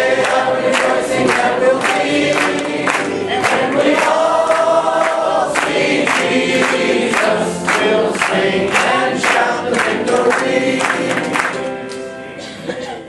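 Congregation singing a hymn together with organ and piano, over a regular beat of sharp strokes about two to three a second. The singing dies away near the end.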